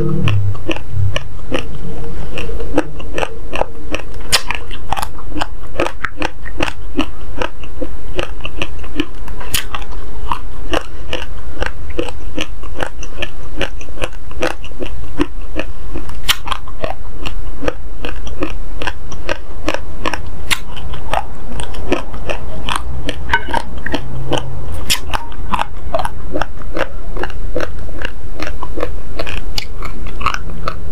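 Close-up chewing of a mouthful of raw, uncooked basmati rice: dense, rapid crunching and cracking of the dry grains between the teeth, going on without a break.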